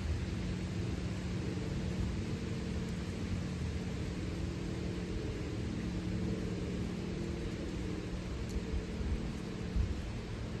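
A steady low mechanical hum of several held tones over a light hiss.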